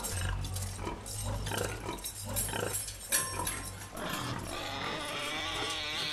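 Creature-like vocal sound effects: a run of short animal-like noises, a sharp click about three seconds in, and a longer wavering call near the end, over a steady low bass.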